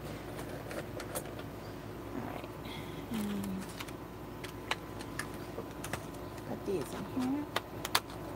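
Light, scattered plastic clicks and taps of gel pens being put back into their case, over a faint steady hum. There are two short murmured voice sounds, a few seconds apart.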